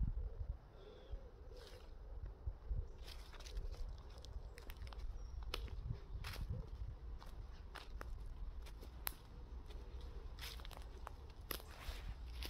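Footsteps on dry leaf litter and twigs: irregular crunches and snaps as a person walks through woodland, over a steady low rumble on the microphone.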